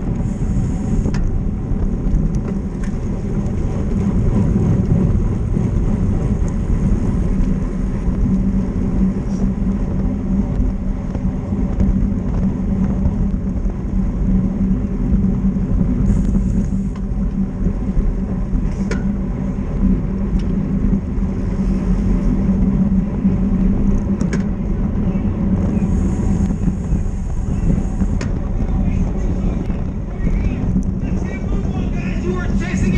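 Steady wind rush over a bike-mounted camera's microphone, with tyre and road noise from a road bike ridden at race speed, about 35 to 45 km/h.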